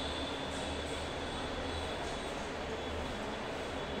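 Steady low hum with an even background hiss and no distinct events: the running background noise of the room.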